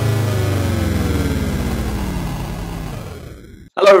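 Synthesized intro sting under a logo animation: a dense stack of electronic tones gliding steadily downward in pitch, fading out over about three and a half seconds until it dies away just before the end.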